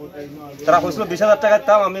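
A man speaking: after a brief lull, talk resumes less than a second in.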